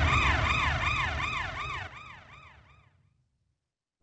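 Siren-like alarm sound effect: a fast wail rising and falling about three times a second over a low rumble, fading out over the first three seconds.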